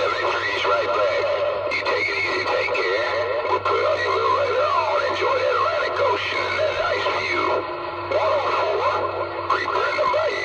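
Incoming transmission heard through a Cobra CB radio's speaker: a garbled, warbling signal whose pitch keeps sliding up and down, over steady humming tones.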